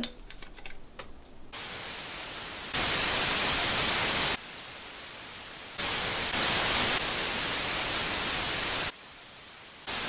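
A few laptop key clicks, then, from about a second and a half in, steady static hiss that jumps abruptly between louder and quieter levels several times, as laid over playback of security-camera footage.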